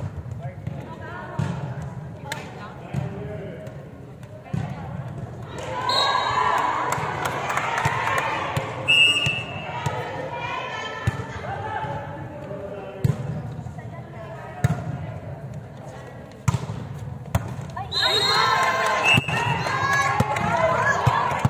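Women's voices calling and cheering in a large sports hall, loudest in two stretches, with scattered sharp smacks of a volleyball against hands and the court floor.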